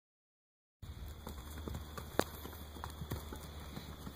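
Hooves of several horses walking on dry dirt, an irregular scatter of light steps starting just under a second in, with one sharper knock about two seconds in, over a steady low rumble.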